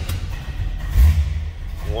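Engine of a 1939 Plymouth street rod running just after a cold start, with a steady low rumble that swells briefly about a second in.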